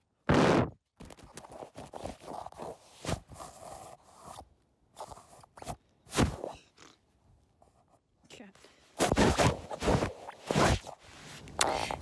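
A smartphone that is recording being dropped and handled: close knocks, thumps and scraping on the phone's microphone. There is a loud knock about half a second in, scattered knocks through the middle, and a dense run of loud knocks and handling noise near the end.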